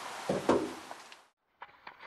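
Steady background hiss with a short vocal sound about half a second in, then an abrupt cut to silence, followed by faint clicks and taps of a small handheld camera being handled.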